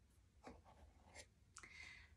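Near silence, with a few faint rubs and light clicks of small wooden blocks being handled in a box and one lifted out.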